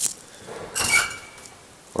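A sharp click, then about a second in a brief metallic rattle with a short high beep, from the controls and fittings of a KONE traction elevator car.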